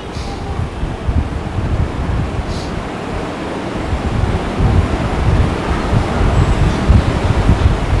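Uneven low rumbling noise like air buffeting a close microphone, with one brief faint rustle about two and a half seconds in.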